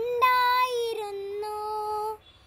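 A young boy singing a Malayalam verse (padyam) unaccompanied, holding two long drawn-out notes.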